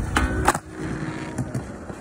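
Skateboard sliding briefly with a ringing scrape, then landing with a sharp clack about half a second in. Its wheels then roll on over concrete.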